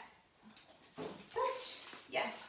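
A dog whimpering briefly, twice in quick succession about a second in.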